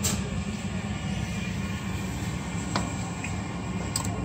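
Steady mechanical hum with a low drone, and one light click about three seconds in.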